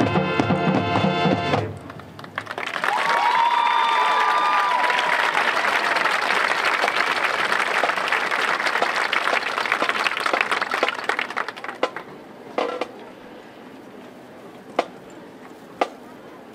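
A marching band's brass and drums holding a final chord that cuts off just under two seconds in, followed by crowd applause and cheering that dies away after about ten seconds. A few sharp knocks follow in the quieter stretch near the end.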